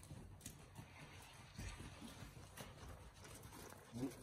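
Faint, soft hoofbeats of a horse moving over arena sand, muffled and irregular.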